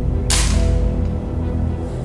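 A single shot from a .22 Diana Mauser K98 replica air rifle about a third of a second in: a sharp crack that dies away quickly. Background music plays under it.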